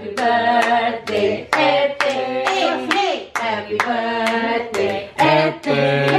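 Several people singing a birthday song together, clapping their hands in time about twice a second.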